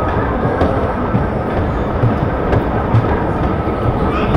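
Dodgem car running across the ride's steel floor, heard from on board: a continuous rattling rumble with a few short clicks and knocks.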